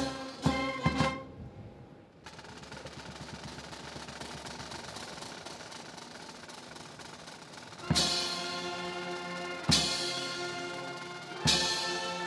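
Jordanian military brass band with drums. A phrase ends with sharp drum strokes in the first second. After a short dip, a steady snare drum roll runs for several seconds. About eight seconds in the full band comes back in with a loud chord, with another heavy drum stroke near ten seconds and brass again near the end.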